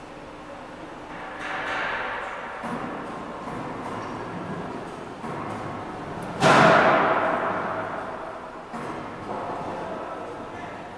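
Heavy-gauge roll forming machine feeding 6 mm steel strip through its feed and guide rollers: knocking and scraping of heavy metal, with a loud bang about six and a half seconds in that dies away over about two seconds.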